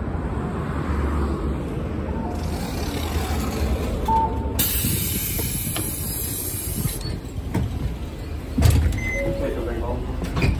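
City bus engine rumbling at idle while the bus stands at a stop for boarding, with a loud hiss of air from the bus's pneumatic system starting about halfway through and cutting off after some two seconds.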